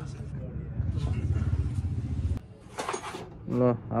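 A steady low engine hum that cuts off suddenly a little past halfway. A man's voice follows near the end.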